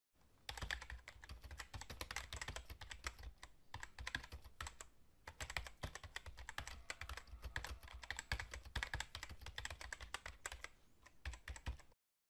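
Rapid typing on a computer keyboard: a dense run of key clicks with a couple of brief pauses.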